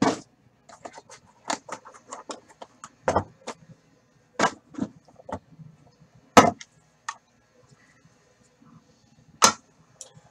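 Hands handling a trading-card box and a pack of cards on a tabletop: scattered sharp knocks and taps with short rustles between, the loudest about three, four and a half, six and a half and nine and a half seconds in.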